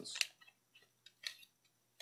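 A few small clicks and a brief scrape from an old set of light-and-sound glasses and their long cable being handled.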